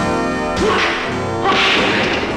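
Dubbed fight-scene sound effects, a swishing punch about half a second in and a longer whoosh and hit about a second and a half in, over a sustained background score chord.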